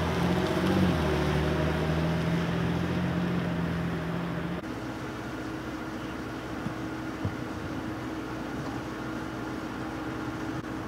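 A van's engine running steadily as it drives slowly past, stopping abruptly just under halfway through. After that, a quieter steady hum with one constant tone remains.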